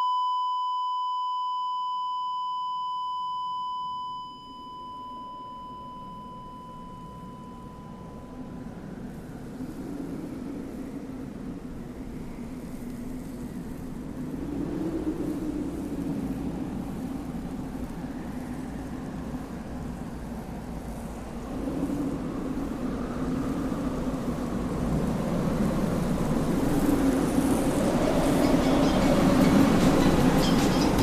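A steady electronic beep tone that fades over the first few seconds and is gone about eight seconds in. A low rumbling noise with slow swells then grows steadily louder toward the end.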